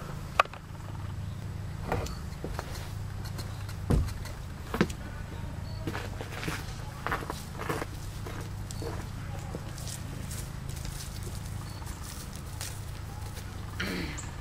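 Footsteps on grass and dry leaf litter, with a few sharp clicks and knocks, the loudest just under half a second in, over a steady low hum.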